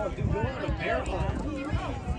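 Several spectators' voices talking over one another, unintelligible, with irregular low thuds underneath.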